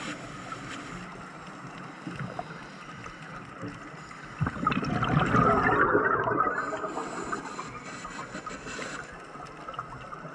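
Scuba breathing heard underwater through a regulator. About halfway through comes a loud gurgling burst of exhaled bubbles, and after it a fainter hiss as the diver breathes in.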